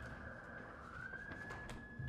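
A faint siren wailing: its pitch climbs to a held high note about halfway through, then starts to fall away. Light paper rustling and handling clicks come from the table.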